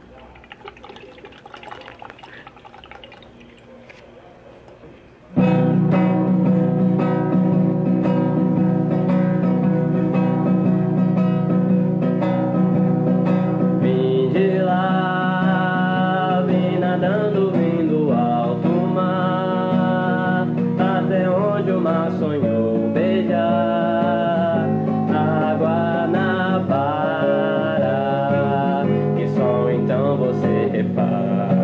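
Acoustic guitar starts suddenly about five seconds in after faint background sound, playing a song's instrumental introduction. From about halfway through, a sliding melodic line plays over it.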